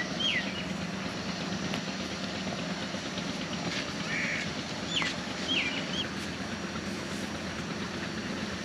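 Rural outdoor ambience: a distant engine's steady low hum, with a small bird's short falling chirps at the start and again about five seconds in.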